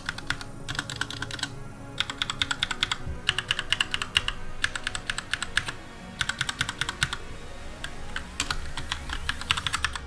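Typing on a Glorious GMMK Compact mechanical keyboard fitted with Gateron Brown tactile switches: quick runs of keystroke clicks in bursts, with short pauses between the runs.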